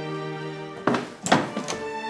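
Dramatic background music of sustained tones, with three short thuds in the second half. The thuds come from people moving about the room.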